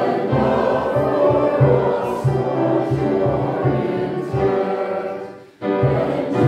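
Congregation and choir singing a hymn together with keyboard accompaniment. The singing breaks off briefly between phrases about five and a half seconds in, then resumes.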